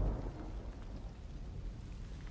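Steady hiss of rain with a low thunder rumble that dies away within the first half-second.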